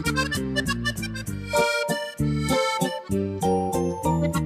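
Background music: an accordion tune with a regular beat, low bass notes and higher chords alternating.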